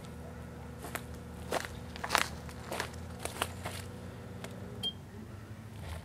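Microwave oven running with a compact fluorescent bulb inside, a steady hum under scattered sharp clicks and crackles.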